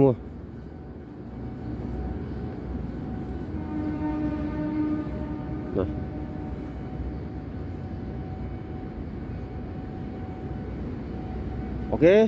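Steady low machine hum with a faint high whine. About four seconds in, a louder pitched drone joins it for a couple of seconds and then fades.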